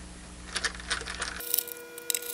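Screwdriver turning out a case screw on the oscilloscope's rear housing: a few light, small metallic clicks and ticks. Faint steady tones join in from a little past halfway.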